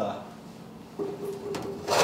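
Metal pipe being handled against a car's sheet-metal hood: a light knock, a scraping sound about halfway through, and a sharp, louder clank near the end.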